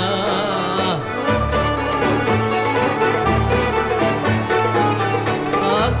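Greek bouzouki band playing an instrumental passage of a zembekiko, the melody carried by plucked strings over a steady bass.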